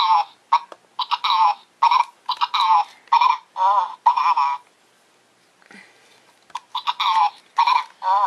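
Dave Banana Babbler Minion Happy Meal toy babbling in a high-pitched voice in short gibberish phrases, set off by pulling its banana outward. It stops for about two seconds in the middle and starts again near the end.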